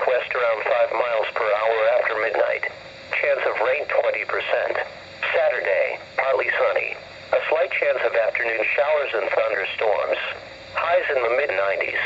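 Speech only: a weather radio's announcer voice reading the local forecast, heard through the radio's small speaker.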